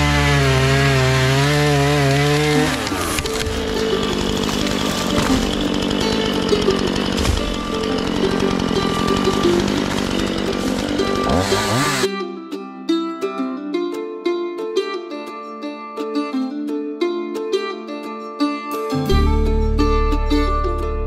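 Gas chainsaw at full throttle cutting into a tree trunk, its engine pitch wavering under load at first, then a dense, noisy cutting sound for about ten seconds. About twelve seconds in the saw cuts off abruptly, leaving only background music with plucked strings.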